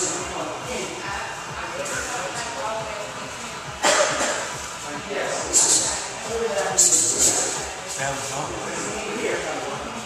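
Indistinct voices and background music in a large room, with several short loud hissing bursts.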